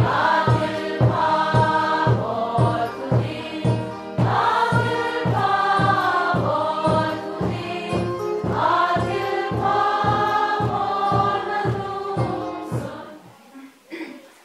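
A congregation, mostly women's voices, singing a hymn together over a steady beat of about two beats a second. The singing stops about a second before the end.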